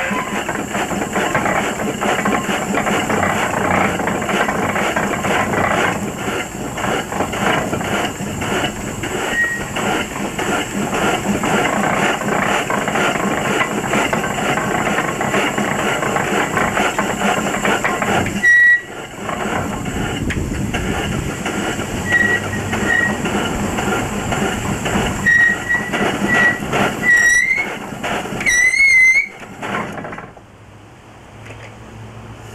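1874 Lidgerwood single-drum, two-cylinder steam hoist running on steam, a rapid continuous run of exhaust beats with escaping steam. It cuts out briefly about two-thirds of the way through. A few short, rising whistle notes sound near the end.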